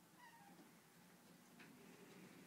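Near silence, broken by one faint, brief high whine from a boxer dog about a quarter second in, falling slightly in pitch.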